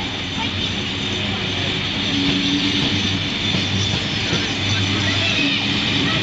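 Heritage passenger carriages of a steam-hauled train rolling past a platform as the train pulls out: a steady rumble with a hiss, no sharp knocks. Voices of people on the platform mix in.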